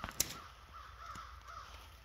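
A bird calling, a quick string of short calls, with two sharp clicks right at the start.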